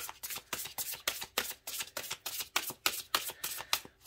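A deck of oracle cards being shuffled by hand: a quick, even run of papery card flicks, about five a second, with a sharper snap right at the start.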